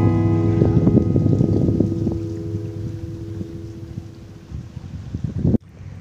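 Background acoustic guitar music: a strummed chord rings on and slowly fades away, then cuts off abruptly with a brief low thump about five and a half seconds in.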